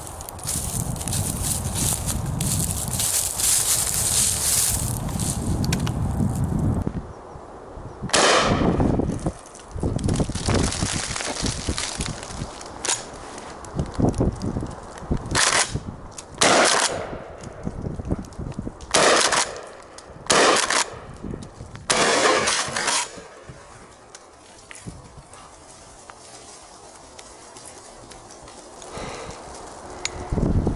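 A Winchester SXP pump-action shotgun firing 36-gram number 4 cartridges in a rapid string: about six loud shots with echoing tails, spread over some fifteen seconds starting about eight seconds in, with quieter knocks between. Before the shots there is a steady rushing noise.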